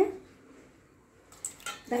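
A short quiet pause in a small kitchen. About a second and a half in come a few faint clicks as a small steel bowl of curd is tipped against a larger steel mixing bowl.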